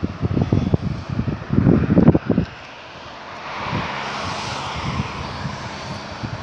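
Wind buffeting the microphone for the first couple of seconds, then a car passing on the road, its tyre and engine noise swelling and easing off.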